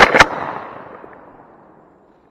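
Shotgun fired at a dove from very close to the microphone: two sharp reports about a fifth of a second apart, then a long echoing tail that fades out over about a second and a half.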